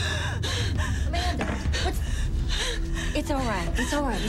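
A woman gasping in fright, with quick, repeated ragged breaths and short whimpering cries between them, as if hyperventilating in panic.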